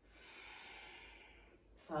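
A woman's long, audible exhale through the nose, lasting about a second and a half, timed to the return phase of a kneeling back-bend exercise. A spoken count begins right at the end.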